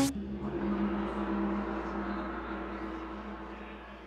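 A large gong ringing out after a single strike, its hum fading slowly over several seconds.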